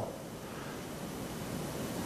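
Steady, even hiss of room tone and recording noise, with no distinct events.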